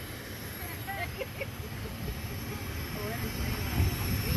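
Steady outdoor noise on an airport apron: a low rumble under an even hiss, with faint voices in the distance.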